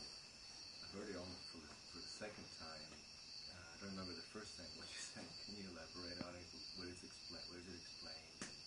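Faint, distant voice of an audience member asking a question off-microphone. A steady high-pitched pulsing chirr runs underneath.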